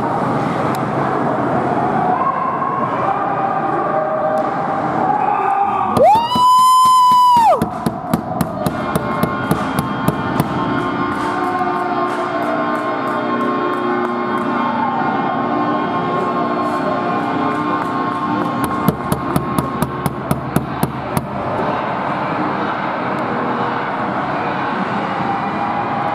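A loud rink goal horn sounds once for about a second and a half, about six seconds in, swooping up in pitch as it starts and dropping as it stops; here it marks a goal. Rink crowd noise runs underneath, and a run of sharp knocks follows the horn, with another run about nineteen seconds in.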